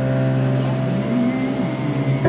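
Ensoniq MR-76 electronic keyboard holding a sustained low note, with a tone gliding upward about a second in.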